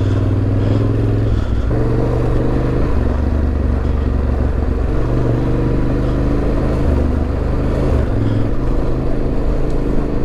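Yamaha Ténéré 700's parallel-twin engine running under way on deep, loose gravel, heard from the bike itself. The engine note steps up and down several times as the throttle is worked.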